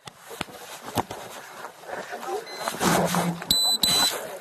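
A few sharp knocks and a brief muffled voice in a noisy background, then two short high-pitched electronic beeps near the end.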